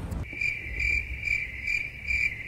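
Cricket chirping sound effect, edited in as the joke cue for an awkward silence: one high trill pulsing about two and a half times a second that starts and cuts off suddenly.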